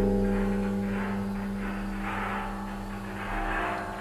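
Large metal cauldron ringing on after being struck: a steady low hum with overtones, slowly fading, and an upper shimmer that swells and fades about once a second.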